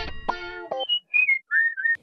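TV show intro jingle ending: a few quick plucked-string notes, then a whistled phrase of three short notes, each lower in pitch than the one before.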